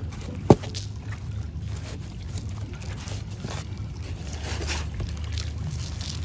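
Gloved hands scooping and pressing gritty potting mix of bark and perlite into a plastic pot around a plant's root, a faint rustling with a single sharp knock about half a second in. A steady low rumble lies underneath.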